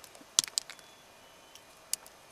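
A few sharp clicks of stone on stone as a flat piece of bluestone is pried out of a layered rock outcrop by hand: one loud click about half a second in, a few small ones after it, and another near the end.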